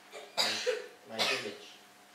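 A person coughing twice, a sharp cough about half a second in and a second one just under a second later.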